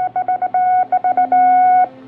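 Telegraph-style Morse code beeps as a sound effect: a quick, uneven run of short electronic beeps at one steady pitch, ending in a longer held beep that cuts off sharply near the end. A low steady music drone comes in underneath about a second in.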